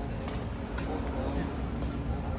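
Music played loud through large outdoor PA loudspeakers during a sound-system test: a heavy, steady bass with crisp beat ticks about twice a second, and faint voices over it.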